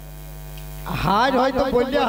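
Steady electrical mains hum from the public-address system. About a second in, a man's voice comes in loud over the microphone with a rising, drawn-out tone.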